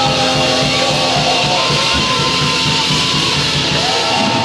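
Live rock band playing loudly: electric guitar, bass, synth and drums over a steady beat, captured on a Wollensak 3M 1520 reel-to-reel tape recorder.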